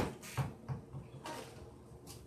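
A sharp knock, then two softer thumps and a short rustle: objects being handled and set down on a hard surface.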